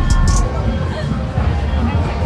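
Music with a heavy bass beat, mixed with people talking and street crowd chatter; the bass and drum hits drop back about half a second in, leaving voices and fainter music.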